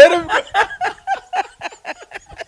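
A woman laughing, a quick run of short laughs, about five a second, that start loud and trail off fainter and fainter.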